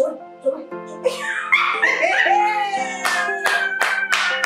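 A woman laughing heartily, then clapping her hands in quick, evenly spaced claps from about three seconds in, over steady background music.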